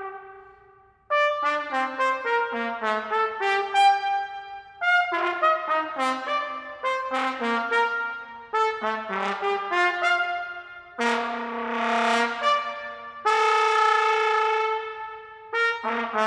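Solo trumpet playing a single melodic line. A held note dies away, then about a second in come quick runs of short notes. Two long held notes follow past the middle, the first swelling in brightness.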